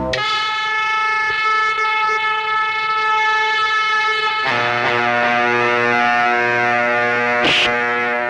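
Film soundtrack music: a long held, horn-like chord that drops to a lower held chord about halfway through, with a short crash near the end.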